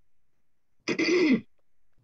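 A person clearing their throat once, briefly, about a second in.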